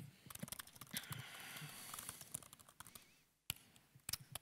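Laptop keyboard being typed on: faint, irregular runs of key clicks that stop about three seconds in, with one more click shortly after.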